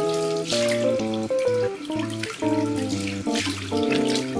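Water from a tap running into a sink while hands splash it onto the face in repeated surges, about every second and a half, rinsing off facial soap. Background instrumental music with a changing melody plays throughout.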